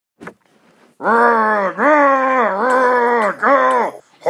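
A person's voice acting out a loud, strained groan in four long drawn-out notes, starting about a second in, after a single short click.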